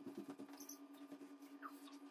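Faint quick taps on a hardwood floor, several a second, over a steady low hum.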